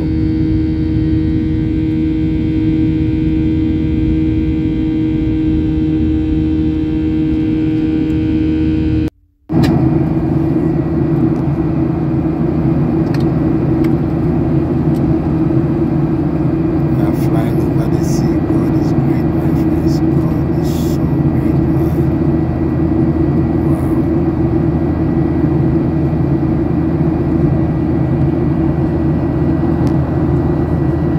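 Airliner cabin noise in the climb after takeoff: a loud, steady rush of jet engines and airflow with a low hum. It drops out for a split second at a cut about nine seconds in, then carries on the same.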